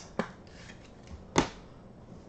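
Two sharp clicks or taps from trading cards and their clear plastic holders being handled: a light one just after the start and a louder one about a second and a half in.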